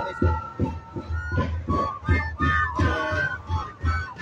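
Live folk music: wind instruments playing a melody over a steady, repeating drum beat.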